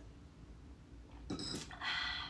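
Quiet sipping from a wine glass, then a brief sharp noise about a second and a half in, followed by a loud, wordless vocal exclamation near the end.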